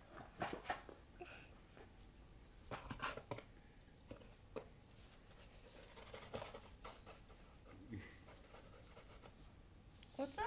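Faint, scattered scratches, taps and rustles of a cat's claws and a cloth toy against a shallow cardboard box and the wood floor as the cat bats at the toy.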